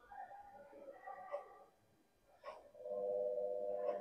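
Sonometer wire beginning to buzz as it is driven by the AC electromagnet above it: a steady pitched hum sets in about three seconds in, just after a faint click, and grows louder. This is the wire reaching resonance, with the bridges at the resonating length.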